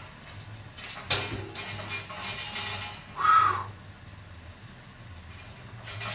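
A steel tank-type water heater being gripped and tipped on a concrete floor: a knock about a second in, then shuffling and scraping, and a short loud pitched screech about three seconds in.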